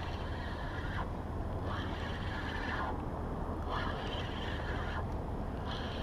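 Spinning reel being cranked to reel in a hooked catfish, over a steady low rumble of wind on the microphone.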